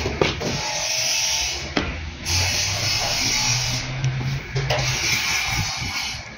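Background music with a steady low bass line, and a few light knocks scattered through it.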